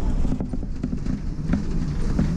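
DAB 12-series articulated bus under way, heard from the driver's cab: a steady low engine rumble with irregular clicks and knocks rattling through the cab.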